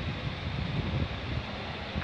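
Steady low background rumble with some wind noise on the microphone. No distinct event stands out.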